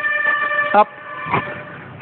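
A vehicle horn sounds once: a single steady, unwavering tone lasting just under a second at the start, then cutting off.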